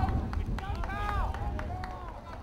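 Shouted calls from players and sideline voices on an outdoor lacrosse field, with low wind rumble on the microphone.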